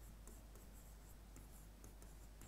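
Faint strokes of a pen writing on an interactive touchscreen board, over a steady low hum; otherwise near silence.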